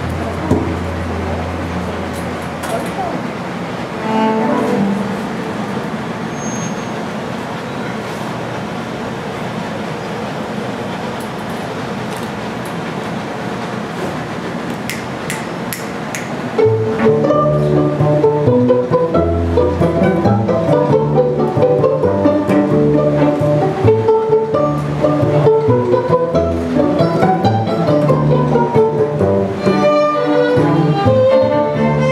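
String quartet of violins, cello and double bass. The first half is quieter, with only a few scattered notes. Just past halfway the ensemble comes in together and plays on, with bowed cello and violins over a plucked double bass.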